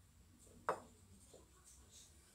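Quiet room with one short, sharp click or tap under a second in and a fainter one about halfway through.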